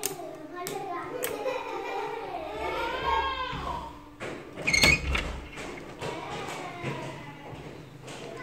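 People talking, children's voices among them, with one loud thump and a short high-pitched sound about five seconds in.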